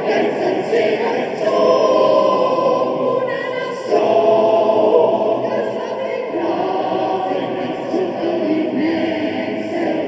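Mixed choir of men's and women's voices singing sustained chords in a stone church, swelling louder about four seconds in.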